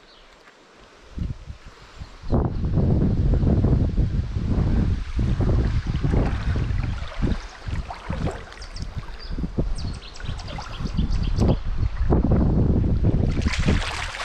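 Wind buffeting the camera microphone in loud, uneven gusts. Near the end the water splashes as a large trout thrashes at the surface beside the landing net.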